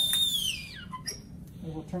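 Tea kettle whistling with a steady high tone, driven by liquid nitrogen boiling inside it. The whistle then slides down in pitch and dies away within about a second.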